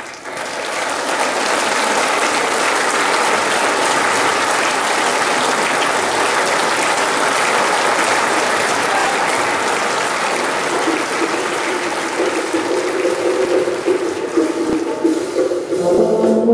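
Audience applause, steady clapping that becomes more uneven near the end.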